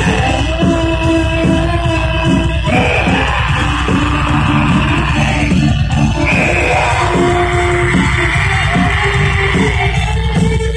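Live heavy rock band playing loudly through a PA: distorted electric guitars, bass and drums, with sung and yelled vocals.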